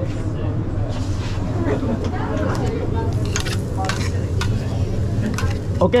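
Diced steak sizzling on a hibachi steel flat-top griddle, with metal spatulas scraping and clicking against the steel as the meat is stirred, over a steady low hum.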